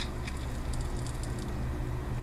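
A sharp click, then faint small ticks of airgun darts and a small digital scale being handled, over a steady low background hum.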